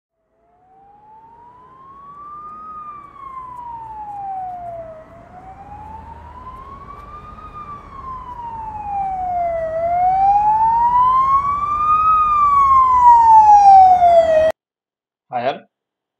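Emergency vehicle siren wailing, rising and falling slowly in pitch about every five seconds. It starts faint, grows steadily louder, and cuts off suddenly shortly before the end.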